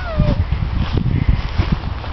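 A young dog gives one short whine, rising then falling in pitch, right at the start, over a low, uneven rumble.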